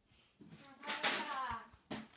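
A girl's voice, a short wordless utterance about a second in, with a sharp click near the end.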